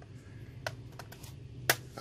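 A few short clicks of hard plastic as a laptop's bottom cover panel is pulled at by hand, with one sharp, louder click near the end.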